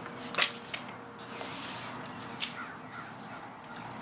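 Sheets of printer paper rustling as a page is turned, with a few sharp crackles and a brief hissy rustle about a second and a half in.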